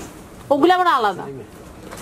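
A single drawn-out vocalised syllable from a person's voice about half a second in, rising briefly and then falling in pitch.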